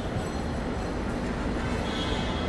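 Steady outdoor background noise: an even rushing hiss over a low rumble, with no distinct events.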